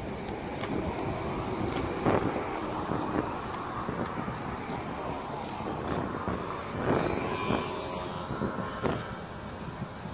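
Wind buffeting a phone microphone in irregular gusts over a steady outdoor rumble. Near the end a faint steady hum is heard, like a distant motor.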